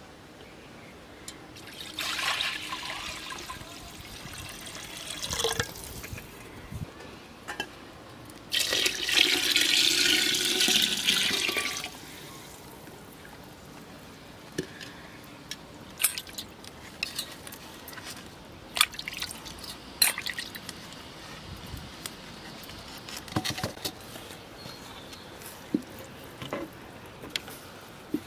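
Liquid pouring and sloshing into an aluminium pot of yogurt, loudest for a few seconds from about eight seconds in, followed by scattered clinks and knocks against the pot.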